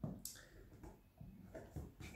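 Faint, irregular scraping and light clicks of cheddar cheese being rubbed by hand across a metal grater set over a bowl.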